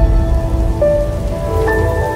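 Logo intro music: held electronic notes over a deep rumbling noise bed, the notes changing pitch about a second in and again near the end.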